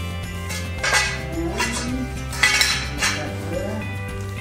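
Aluminum T-slot extrusions clinking against each other as they are handled, a few sharp metallic clinks, over steady background music.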